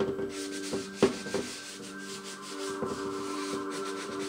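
Hand rubbing back and forth across the surface of a painted wood plank in repeated scrubbing strokes, with one sharp knock about a second in. Soft sustained music tones run underneath.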